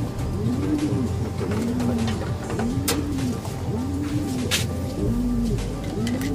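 Racing pigeons cooing in a loft, a repeated coo about once a second that rises and falls in pitch. Two sharp clicks come midway.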